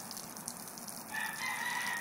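A rooster crowing once, one long held call starting about halfway through that drops in pitch at its end, over the steady hiss of a garden hose spraying water onto a board.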